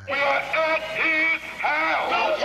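Singing: a voice holding pitched, sustained notes over music, starting abruptly.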